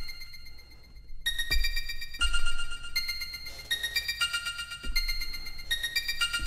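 Synthstrom Deluge groovebox playing a simple sequenced pattern on a sample-based synth patch built from an Amiga-library 'breath' sample, with heavy reverb and delay. An echo tail fades for about a second, then a run of held, pitched notes follows, a new note every half second or so.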